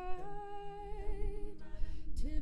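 Student a cappella group humming a sustained chord, several voices holding steady notes, the chord shifting about one and a half seconds in.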